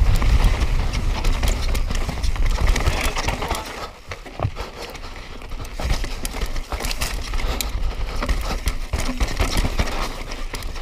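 Mountain bike descending a rocky dirt trail at speed: tyres crunching over dirt and stones, with irregular rattling knocks from the bike and a low rumble of wind on the microphone. It goes quieter for a couple of seconds near the middle.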